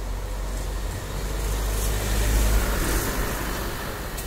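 Electric hydraulic power pack running, its motor and pump making a steady low rumble that swells louder a little past halfway through and then eases.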